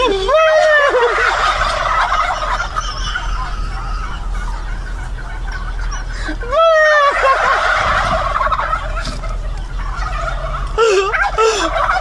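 A plush turkey toy's sound box playing a recorded turkey gobble. The gobbling starts just after the beginning and starts over about six and a half seconds in, each run lasting several seconds.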